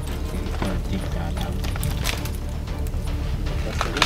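Background music with a steady low bed, over which a few sharp snaps sound, the loudest just before the end: an African elephant breaking and stripping tree roots with its trunk and tusks.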